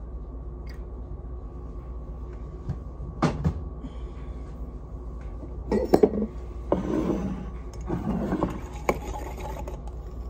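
Dishes and utensils clinking and being handled while iced coffee is made, over a steady low hum. There are two sharp clinks about three seconds in, then a run of handling noises in the second half.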